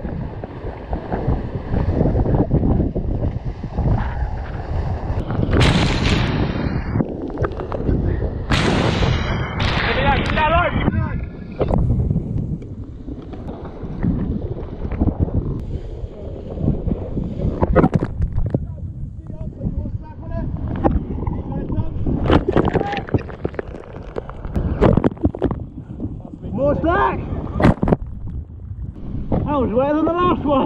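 Wind buffeting the microphone and water rushing past a racing catamaran sailing fast, with a few sharp knocks and rattles from lines and deck gear.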